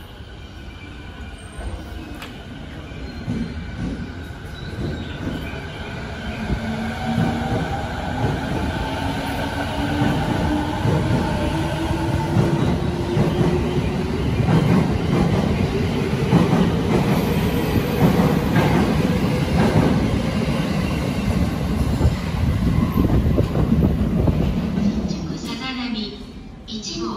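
A JR East 209 series electric train pulls away and accelerates. Its motor whine climbs steadily in pitch, and the rumble of wheels on rail grows louder as the cars pass close by.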